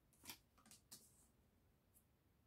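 Tarot cards being handled and slid into place on a table: three faint, brief swishes in the first second, the first the loudest.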